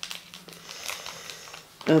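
Foil trading-card booster wrapper crinkling as it is squeezed and turned in the fingers: a run of small, irregular crackles.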